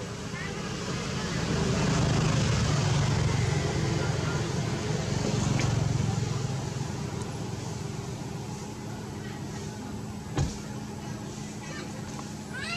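Low engine rumble of a passing motor vehicle, swelling over the first couple of seconds, holding, then fading away by about eight seconds in. A single sharp knock near the end.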